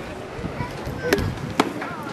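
Two sharp impacts about half a second apart, a little over a second in, from a pitched baseball arriving at the plate.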